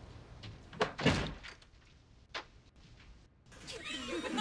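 A front door being shut: a solid thud about a second in, followed by a lighter knock a little over a second later.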